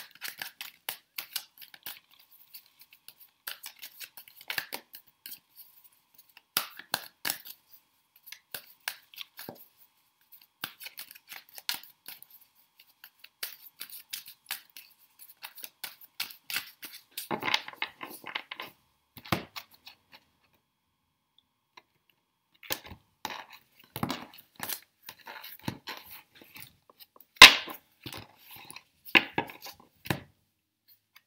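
A Golden Universal Tarot deck shuffled by hand: a quick, irregular run of cards sliding and snapping against each other. It stops briefly about two-thirds of the way through, and a few louder clicks come near the end.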